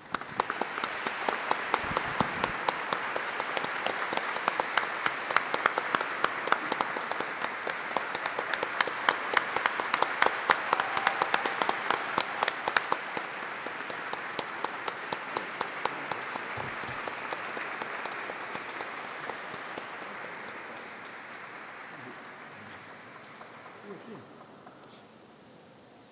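Audience applauding: the clapping starts at once, is fullest about halfway through, then slowly dies away.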